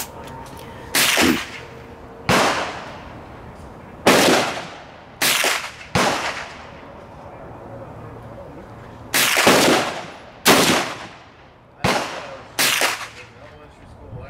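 Gunshots on an outdoor shooting range: about nine sharp reports at uneven intervals, each followed by a brief echoing tail, with two close pairs near the middle and near the end.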